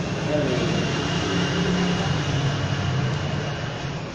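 A man's voice speaking through a PA system, with a steady hum underneath.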